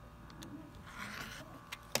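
Rotary cutter slicing through pillow fabric along a ruler on a self-healing cutting mat, trimming off a corner: a faint, brief rasp about a second in.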